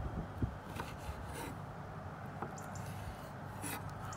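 Chef's knife cutting lime slices on an end-grain wooden cutting board: the blade rubbing through the fruit, with a few short knocks as it meets the wood. The cook calls the knife lousy and in need of sharpening.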